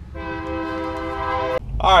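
A horn blowing one steady, unchanging note for about a second and a half, slowly getting louder.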